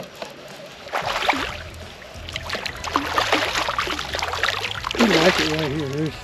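A hooked striped bass splashing and thrashing at the water's surface close to the boat, an uneven spatter of splashes lasting several seconds. A voice comes in near the end.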